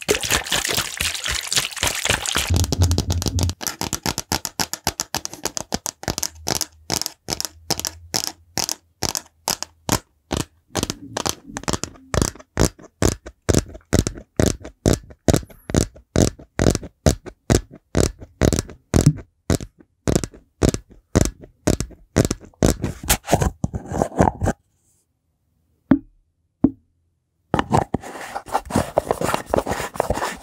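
Fingers tapping rapidly on the sides of a plastic shaker bottle close to the microphone, several sharp taps a second. The tapping stops about 24 seconds in, leaving a short pause broken by a couple of single taps, then a scratchy rubbing starts near the end.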